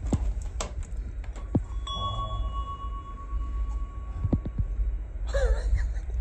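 A few sharp knocks and clicks, then a single steady ringing tone, chime-like, held for about three seconds before fading. A brief voice comes in near the end over a low steady hum.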